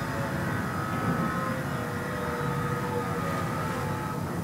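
A steady, motor-like hum with faint, slightly wavering tones, heard through the room's speakers during a projected video clip.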